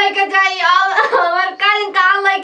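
A woman crying aloud in a high, sing-song wailing voice.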